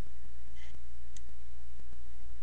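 Computer keyboard keys clicking in a quick run of keystrokes over a steady low hum.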